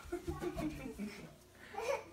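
Soft laughter and wordless voice sounds, with a few low thuds. A rising vocal sound comes near the end.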